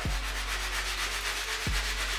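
A cleaning brush scrubbing a sneaker's upper in quick, steady back-and-forth strokes, a continuous scratchy rubbing, with a soft knock near the end.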